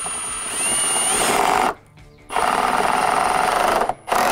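Cordless Milwaukee FUEL impact driver driving hex-head structural screws through a steel hurricane tie into a wooden deck joist: two runs of rapid hammering, the first growing louder about a second in as the screw bites, then a short pause and a second run that stops just before the end.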